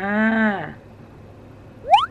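A woman's drawn-out "aah", held for under a second and dropping in pitch at its end, then a pause. Near the end a quick rising sweep tone begins.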